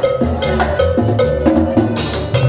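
A small live band playing: a drum on a stand struck with sticks in a quick, even beat, over a line of changing low notes.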